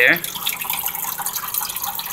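Water trickling and dripping down the wetted cooling pad of an SPT SF-608RA evaporative (swamp) cooler, a steady patter of many small drips, just after its pump has started the water flow. The pad is trimmed halfway so that the water falls and drips audibly.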